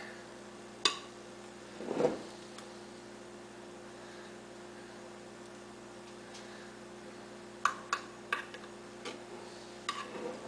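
Metal spoon clinking and scraping against a glass baking dish as pudding is spread: a light clink about a second in, a short scrape about two seconds in, and a quick run of clinks near the end, over a steady low hum.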